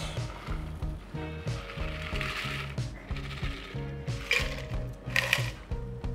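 Cocktail being double-strained from a copper shaker tin through a fine-mesh strainer, liquid pouring into an ice-filled glass, with two sharp metallic clinks in the second half. Background music with a steady beat runs under it.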